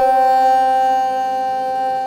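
Esraj, a bowed Indian string instrument, holding one long steady note in the slow, unmetered aalap of Raag Puriya Dhanashri.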